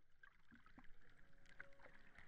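Faint watery texture of many small irregular clicks and plinks, like bubbling or dripping water, fading in out of silence. A soft held tone joins about a second in.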